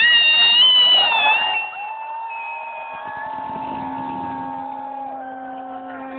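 Sustained electronic synthesizer chords from a club sound system. They start suddenly and loud, ease off after about a second and a half into quieter held notes, and a low steady note joins about three seconds in.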